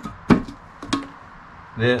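A metal can of contact cement being covered, with its lid and the paint brush knocking on the can: a few sharp clicks, the loudest about a third of a second in.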